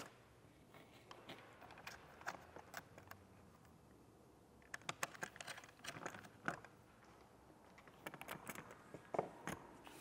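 Faint, scattered small metallic clicks and taps of an Allen key working steering-wheel bolts into a hub adapter as they are tightened, coming in short clusters with quiet gaps between.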